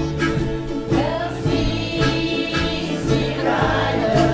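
Acoustic folk band of ukuleles, guitars and double bass playing a tune with a steady pulsing bass line, with a harmonica playing over it.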